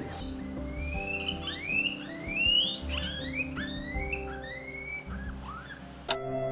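A guinea pig wheeking: a rapid run of short, rising, whistle-like squeals while it is held on the examining table, over soft background music with sustained tones.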